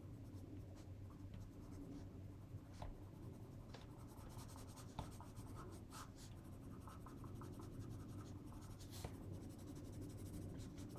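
Colored pencil scratching in short back-and-forth shading strokes on holographic printable vinyl sticker paper, faint, with a low steady hum underneath.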